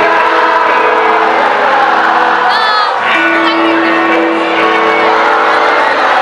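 Loud live band music in a crowded hall, with the audience cheering and shouting over it. A brief high shout from the crowd comes about two and a half seconds in.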